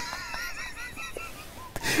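A man laughing hard in a rapid string of short, high-pitched wheezes, with a sharp breath near the end.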